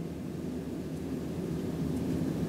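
Steady low hum and hiss of room background noise, with a felt-tip marker faintly drawn along textbook paper, growing a little louder toward the end.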